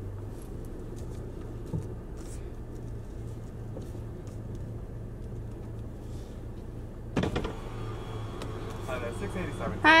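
Car engine idling, a steady low hum heard inside the cabin as the car moves up slowly.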